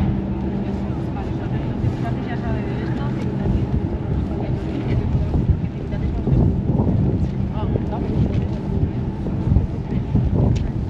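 Outdoor street ambience on a pedestrian square: a steady low engine hum, wind on the microphone, and passersby talking.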